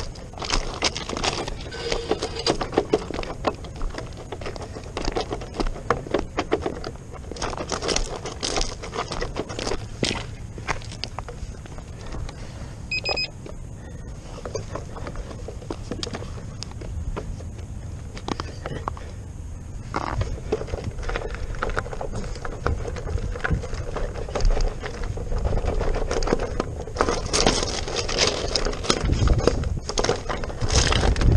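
Footsteps crunching on loose, rounded river-rock gravel while an electric unicycle is wheeled along by its trolley handle, its tyre rolling and knocking over the stones in an uneven run of crunches and clicks. A short electronic beep sounds about halfway through.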